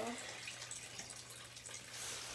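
Turtle tank's water filter running, a steady low hum with water trickling, and faint small crinkles from a plastic fish bag being handled at its knot with scissors.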